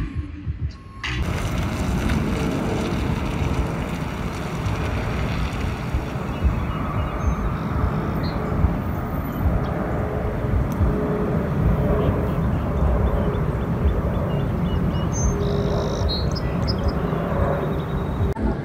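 Steady outdoor rushing noise with a flickering low rumble, and a few brief bird chirps high above it about halfway through and near the end.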